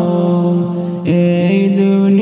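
Male voice singing a Bengali Islamic gazal, holding long notes that step from pitch to pitch, with a brief dip about a second in.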